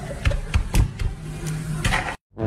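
Straws jabbed repeatedly into the film-sealed lids of plastic bubble tea cups: an irregular series of sharp knocks and taps as the straws hit and pierce the seals.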